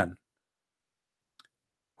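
A single faint click about one and a half seconds in, in a quiet gap between a man's words.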